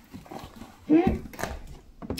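A short spoken "yeah" and "hmm" about a second in, over quiet room tone.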